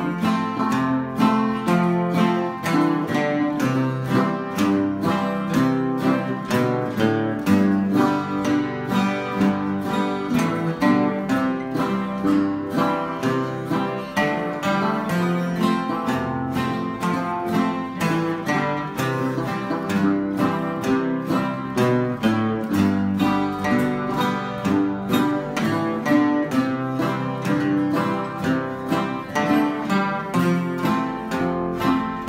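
Steel-string acoustic guitar played oldtime style in a steady rhythm, bass notes alternating with chord strums, with two-note bass runs walking down to each new chord.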